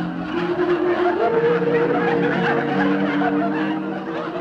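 Audience laughter over a short orchestral bridge cue of a few held notes that step to new pitches, marking a scene change.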